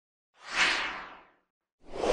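Whoosh sound effects of an animated logo intro: one swoosh that swells and fades about half a second in, then a second one starting near the end.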